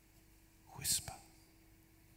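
A man whispers one short word about a second in, most likely 'whisper', finishing the phrase 'a gentle, quiet whisper'. Around it is low room tone with a faint steady hum.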